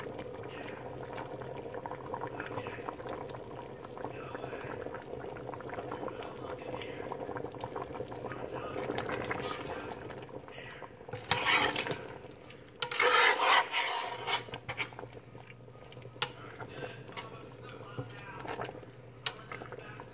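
A metal spoon stirring and scraping through a pot of boiling stew peas in a stainless steel pot, with many small clinks against the pot over a steady low hum. Two louder rushes of noise come about eleven and thirteen seconds in.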